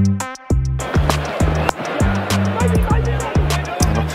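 Electronic background music with a steady beat, about two beats a second. About a second in, the noisy sound of the match broadcast comes in under it.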